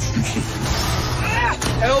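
Film-trailer sound mix: a steady low vehicle-like rumble, with a voice exclaiming "whoa" near the end.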